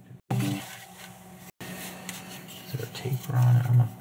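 Rustling and rubbing of a neoprene lens cover being handled and slid over a camera lens hood, with a man's low voice briefly near the end.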